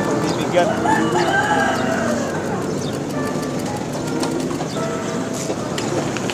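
A rooster crowing once, a long call that rises, holds and falls over about a second and a half, starting about half a second in, over steady street background noise.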